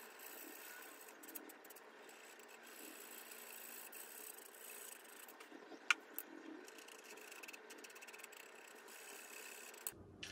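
Faint handling of leather pieces on a cutting mat, light scrapes and small clicks over a steady hiss, with one sharp click about six seconds in.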